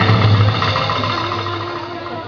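Electric guitars and bass holding a final chord that rings out and slowly fades, with a high wavering note above the low drone.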